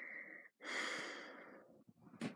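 A person breathing close to the microphone: a short breath, then a longer one that fades out.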